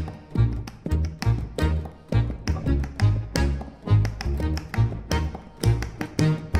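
Live acoustic trio of violin, accordion and double bass playing a fast, driving piece, with sharp rhythmic accents about two to three times a second over a strong low bass line.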